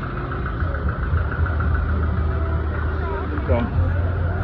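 Vehicle engines idling in street traffic, a steady low hum, with people talking in the background.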